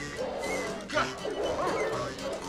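Several hound dogs barking, yipping and whining over film music, from a movie soundtrack.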